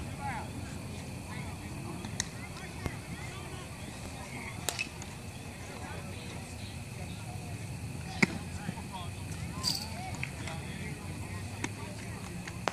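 Indistinct voices of players and spectators at an outdoor baseball field over a steady low background rumble, with a few short sharp clicks, the loudest about eight seconds in.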